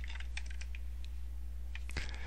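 Computer keyboard keystrokes: a quick run of key taps in the first half second and a few more near the end, over a low steady electrical hum.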